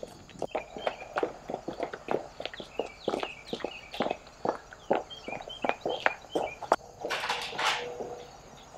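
Footsteps of two people walking briskly across a dirt and gravel yard, a quick uneven run of crunching steps. A short rush of hissing noise comes near the end.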